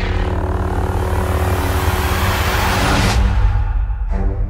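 Trailer sound design: a loud rumbling, hissing swell over the low buzzing hum of a lit lightsaber, with orchestral music held underneath. The hiss cuts off about three seconds in, leaving the low music and rumble.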